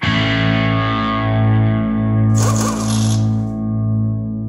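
Closing music: a distorted electric guitar chord struck once and left to ring, with a short noisy hit about two and a half seconds in.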